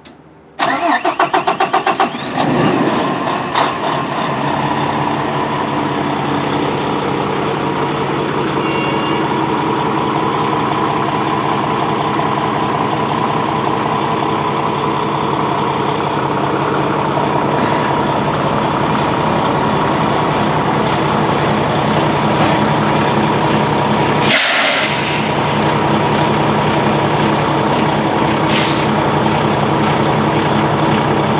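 Kenworth semi tractor's diesel engine cranked over for about a second and a half, catching and settling into a steady idle. Two brief hisses come later, the longer one about 24 seconds in.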